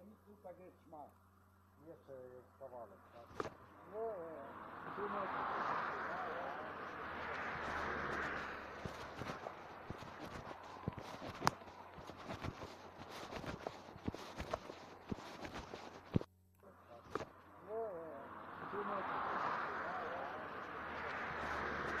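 Cars passing on a street, heard through a played-back recording: a swell of tyre and engine noise rises and fades, with faint voices and scattered clicks. The recording cuts out about sixteen seconds in and starts again, and a second car passes near the end.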